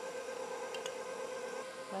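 KitchenAid Professional 5 Plus stand mixer running at a steady whine, its flat beater churning a thick cake batter in the steel bowl.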